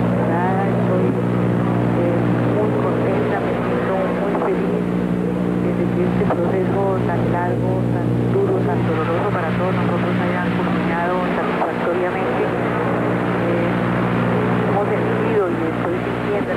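A woman speaking over a telephone line, her voice thin and hard to make out, with a steady hum running under it.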